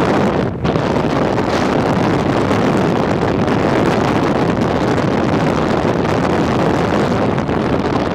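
Steady wind rushing over the microphone of a moving motorcycle, mixed with road and engine noise, with a brief drop about half a second in.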